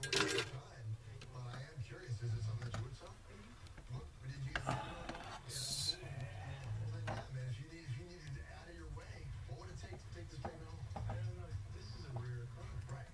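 Faint background voices and music run underneath, with a steady low drone. Over them come a few short clicks and rustles from hands handling guitar wiring and parts, including a brief hiss about five and a half seconds in.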